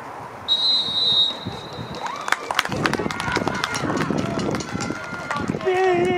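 A referee's whistle blows one long, high, steady blast for kickoff about half a second in. About two seconds in, scattered clapping and shouting voices follow.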